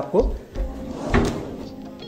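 Kitchen base-cabinet drawer with a cutlery tray being pulled open on its runners, a sliding rush with a knock about a second in.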